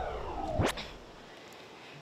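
Logo-transition sound effect: a sharp whip-like hit, then a swooshing sweep that fades out within about a second.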